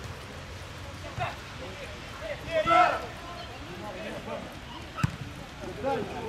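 Players and coaches shouting across a football pitch during play, with one loud call about two and a half seconds in. A single sharp thud about five seconds in, like a ball being kicked.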